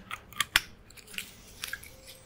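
Cap being twisted back onto a glass aperitivo bottle: a few small, sharp clicks and light scrapes, the loudest about half a second in.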